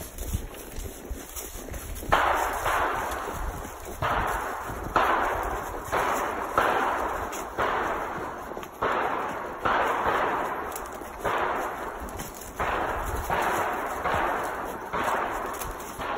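A mule's hooves crunching and swishing through deep dry leaf litter at a walk, about one step a second, each step a sharp crunch that trails off.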